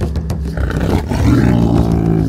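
A deep big-cat roar sound effect, rising in about a second in and loudest near the end, over dramatic background music with steady drum hits.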